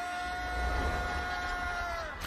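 A plate compactor's small engine rumbling low, under one steady high held tone that dips slightly near the end.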